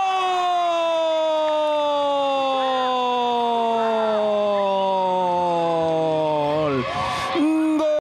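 A Spanish-language football commentator's drawn-out 'gooool' goal call: one long held shout whose pitch slowly falls for nearly seven seconds before it breaks off.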